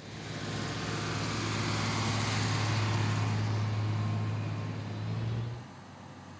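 A heavy vehicle engine running with a steady low hum. It swells over the first few seconds, holds, then fades away shortly before the end.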